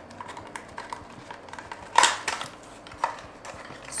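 Eye cream packaging being opened and handled: a run of light clicks and rustles, with a sharper click about two seconds in and another about a second later.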